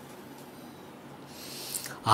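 Quiet pause in a man's speech: faint steady low hum and room noise, with a soft breathy hiss late in the pause as he draws breath before speaking again.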